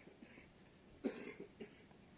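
A person coughing once, close to the microphone, about halfway through, with a shorter, softer sound just after, over faint background hiss.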